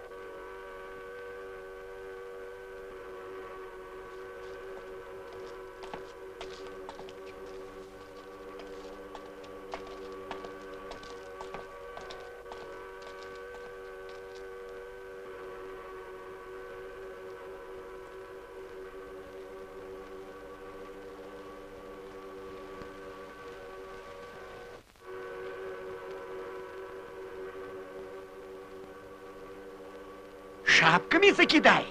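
Several factory steam whistles (hooters) sounding together in one long steady chord, signalling the news of war. A few scattered clicks come in the middle, and the sound breaks off for a moment near the end before it resumes.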